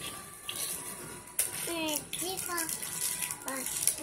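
A young child's high voice in a few short, unclear words, with a couple of sharp clicks about half a second and a second and a half in.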